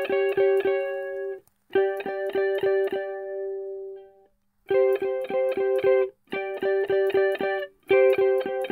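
Electric guitar playing two-note intervals (fifths and fourths) on the second and third strings, each dyad picked repeatedly at about four strokes a second. The notes come in four short phrases with brief gaps, and the second phrase is left to ring out before the next starts.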